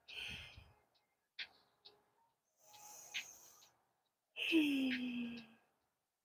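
A woman's breathing during a slow yoga shoulder exercise: a soft exhale at the start, a few faint clicks, and a voiced sigh, slightly falling in pitch, about four and a half seconds in.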